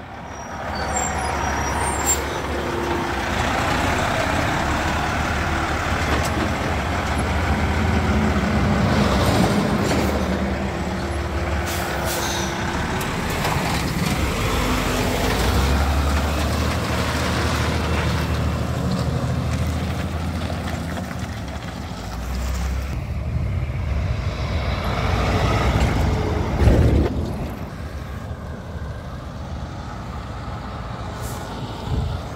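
Diesel dump truck with a trailer driving past close by, its low engine rumble changing in pitch as it goes through the gears, with a few short air hisses. A car goes by near the end, the loudest moment.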